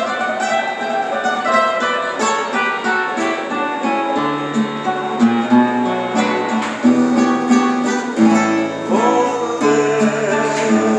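Acoustic guitar played by hand, a plucked melody with low bass notes joining about four seconds in.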